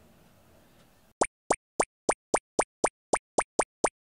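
A run of eleven short cartoon pop sound effects, each sliding quickly up in pitch, about four a second, starting after a second of faint room tone.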